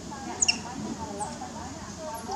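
Baby macaque making many short, wavering squeaky calls, with a couple of sharp high chirps about half a second in.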